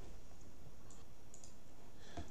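A few faint computer mouse clicks, about half a second apart, over steady low room hiss.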